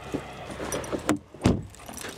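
Car door being handled: light metallic jingling and small clicks, then one loud dull thump about a second and a half in as the door is shut.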